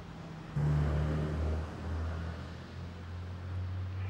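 A motor vehicle engine running nearby: a low, steady hum that turns suddenly louder about half a second in, then eases back.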